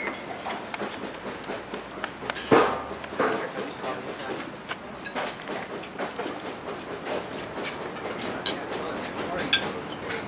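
Open-air restaurant ambience: indistinct chatter of diners with frequent clinks and clatter of plates and cutlery, and one loud knock about two and a half seconds in.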